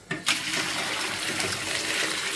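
Boiling-hot pickling brine of soy sauce and vinegar poured steadily from a pot over whole cucumbers in a container, a continuous splashing pour that starts just after the beginning.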